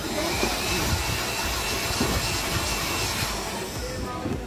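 Handheld electric air blower running steadily with a high whine, blowing old toner dust out of a laser printer toner cartridge before it is refilled; it stops near the end.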